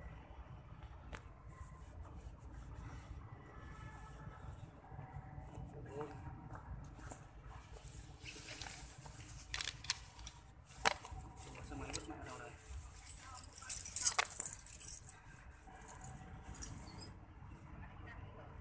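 Low rumble with faint distant voices, broken by a few sharp clicks and a brief loud jingling rattle about fourteen seconds in, close to the microphone.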